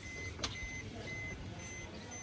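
Electronic warning beeper sounding steadily about twice a second, with a single sharp click about half a second in.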